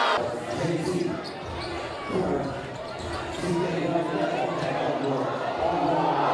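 A basketball bouncing on a hardwood gym court amid crowd chatter and voices.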